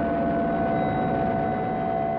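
Steady drone of bomber aircraft engines, heard as an old, hissy archival recording.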